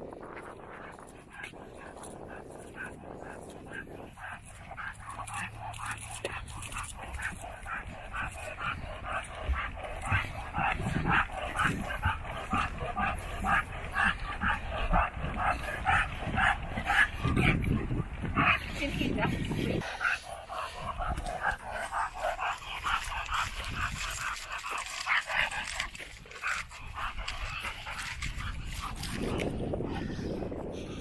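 A dog on a lead whining and yipping, many short cries in quick succession, busiest through the middle.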